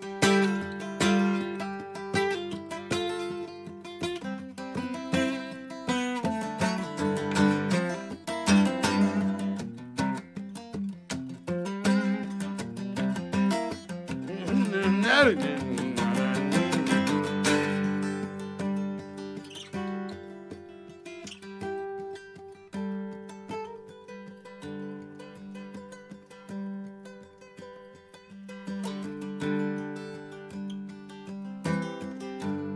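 Solo acoustic guitar, picked and strummed, with a wavering, bending tone about halfway through at its loudest point, then played more softly for the rest.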